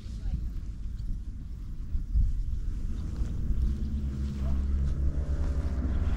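Wind buffeting the microphone, a low rumble. A faint steady hum joins it about halfway through.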